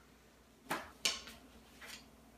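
A few short, soft rustles from handling paper masks on sticks, as one mask is put down and another picked up, starting under a second in.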